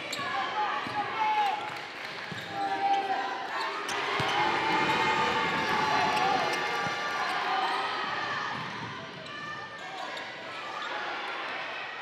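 Basketball being dribbled on a hardwood gym floor, with players' and spectators' voices calling out.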